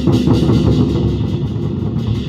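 An ensemble of large Chinese barrel drums playing fast, dense strokes that run together into a steady rumble.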